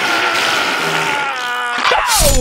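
A cartoon-style power-up: a long held yell over a steady hissing rush of an energy-aura effect, with a rising cry starting near the end.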